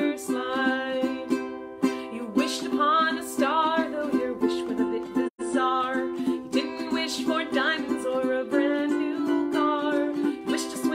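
A woman singing a children's song, accompanied by her own steady ukulele strumming. The sound cuts out completely for a split second a little past halfway.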